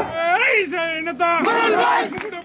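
A man shouting into a microphone through a loudspeaker, his voice in long drawn-out calls that rise and fall, with crowd noise behind.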